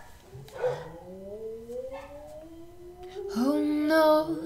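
A long howl-like wail that rises slowly in pitch for about three seconds, then a louder held note near the end.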